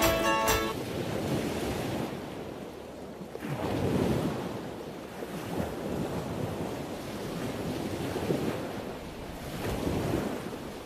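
A music track cuts off within the first second, leaving a steady rushing noise that swells and fades every couple of seconds.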